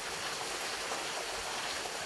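Steady, even rushing of running water in the background.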